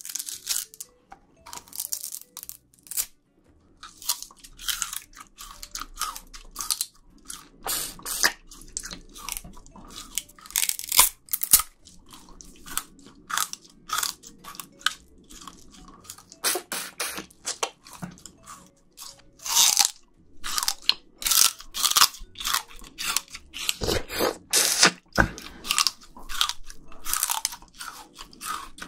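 Raw sugar cane being bitten and chewed right at the microphones: repeated, irregular crunches and cracks as the fibrous stalk is crushed between the teeth, the loudest around halfway and in the last few seconds.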